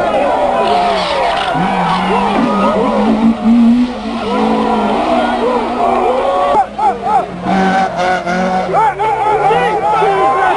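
Car engine revving while tyres squeal in a drift, with voices in the background. The engine pitch climbs in the first few seconds and drops again near the end.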